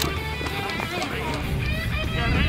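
Background music with steady sustained tones and a low pulse, with brief indistinct voices over it.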